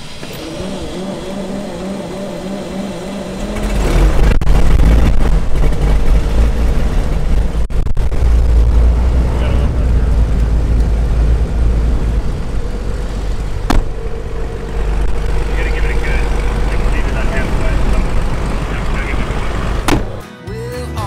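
Light-aircraft piston engine of a Cirrus being started: the starter cranks for a few seconds, then the engine catches about four seconds in and runs with a loud, deep, steady rumble.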